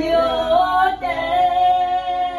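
Women's voices singing a devotional hymn unaccompanied, in long held notes that glide slowly from one pitch to the next.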